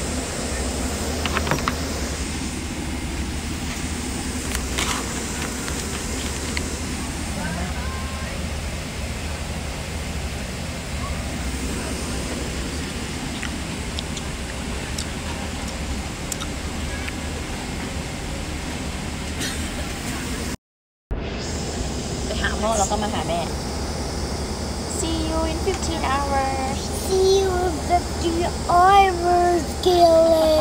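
Steady airliner cabin noise: an even rush of air with a low rumble beneath it. It drops out suddenly for a moment about two-thirds of the way through.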